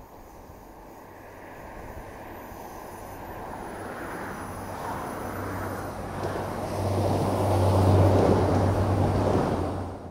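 Diesel multiple unit passenger train approaching along the line, its engine hum and wheel noise growing louder as it draws near. It is loudest about eight seconds in as it passes close below, then it drops away.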